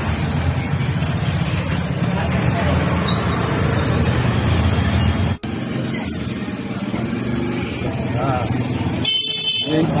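Motor scooter engines running as they ride past close by through a flooded street, with voices chattering in the background. A horn toots near the end.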